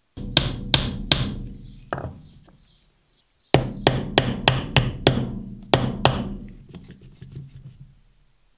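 A hammer tapping pins through the holes of a steel knife tang: sharp, ringing metallic strikes in two runs, four taps, then after a short pause about eight more in quick succession.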